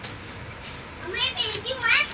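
A high-pitched child's voice speaking, starting about a second in after a quiet first second.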